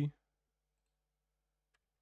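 A spoken word in Arabic cuts off just after the start, then near silence, broken by one faint, short computer mouse click near the end.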